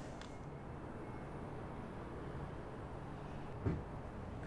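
Steady low background rumble, with a brief short vocal sound near the end.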